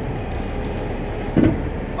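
Heavy tow truck's engine running steadily as its hydraulic underlift raises the front of a transit bus, with a single short thump about one and a half seconds in.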